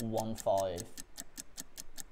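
Fast, even ticking of a countdown-clock sound effect running under a timed deal, about six or seven ticks a second. A man's voice is heard in the first second.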